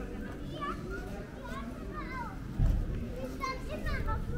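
Children's high voices calling and chattering, with a low rumble, the loudest sound, starting about two and a half seconds in.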